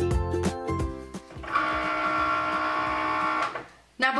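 Background music with a beat for about the first second, then a Cricut cutting machine's motors whining steadily for about two seconds as it feeds the cutting mat out, stopping just before the end.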